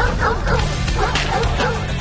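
A dog yipping and barking in a quick run of short calls, over intro music.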